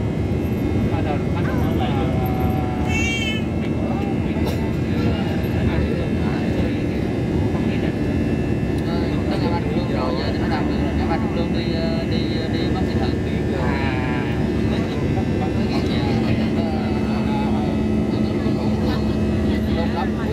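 Steady noise of a jet airliner's engines and rushing air heard inside the passenger cabin during the climb after takeoff. A low steady hum joins in about three-quarters of the way through.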